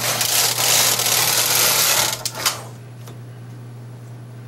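Carriage of a bulky double-bed knitting machine being pushed across the needle beds to knit a row: a rasping clatter for about two seconds, ending in a couple of sharp clicks as it stops at the end of its run.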